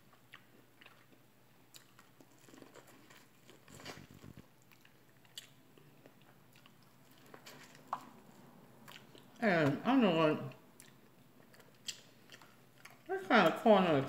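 A person biting and chewing corn on the cob, heard as scattered faint clicks and crunches. A short voice sound comes about two-thirds of the way through, and talking starts near the end.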